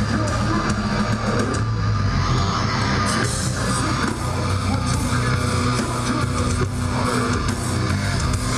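A live metal band playing loud and without a break: electric guitars and a drum kit, recorded from the crowd.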